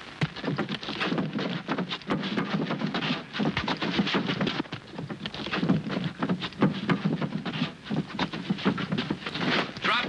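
Shouting voices without clear words over a dense run of sharp knocks and thumps.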